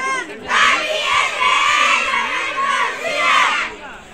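A troupe of schoolgirls shouting together in unison: one loud, drawn-out group yell that starts about half a second in and lasts about three seconds.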